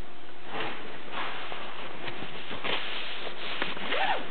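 Several rubbing strokes as the back of a greasy wooden bass guitar neck is wiped clean, each stroke a short scratchy hiss.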